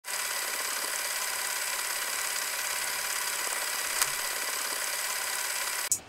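A steady hiss with a faint buzzing tone in it, even in level throughout, with a single click about four seconds in; it cuts off abruptly just before the end.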